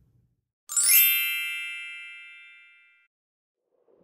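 A single bright bell-like chime, struck sharply about a second in and ringing out over about two seconds: a scene-transition sound effect.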